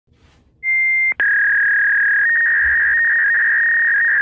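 Two loud, steady electronic beep tones: a short higher one about half a second in, then, after a brief break, a slightly lower one held for about three seconds.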